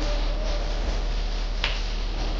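A single sharp hand clap from a thiruvathira dancer near the end, over a steady noisy background with a constant low hum.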